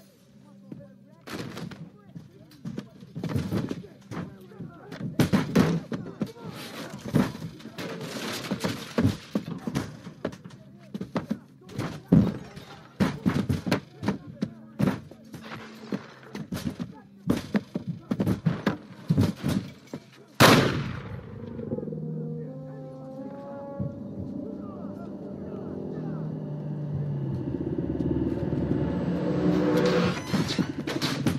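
Film soundtrack: irregular runs of sharp clicks and knocks, then one loud hit about twenty seconds in, followed by sustained stepping tones that swell toward the end.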